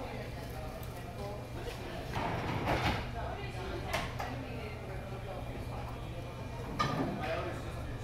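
Indistinct background voices over a steady low hum, the room noise of a restaurant dining room. A few short knocks of dishes being handled come through, the clearest about three seconds in and again near the end.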